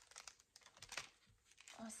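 Faint, scattered crinkles of clear plastic cellophane sleeves being handled, with the loudest crackle about a second in.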